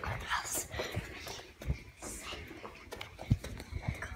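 Hushed whispering, with rustling and thumps of movement and one sharp click a little after three seconds in.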